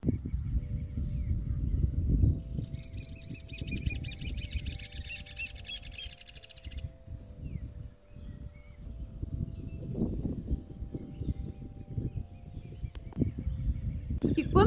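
A bird calling a rapid run of high, chirping notes for a few seconds near the start, over a low, uneven rumble and faint steady hums.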